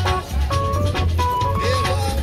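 Live reggae band playing an instrumental stretch of the song: a heavy, steady bass line under even drum hits and held keyboard tones, with no singing.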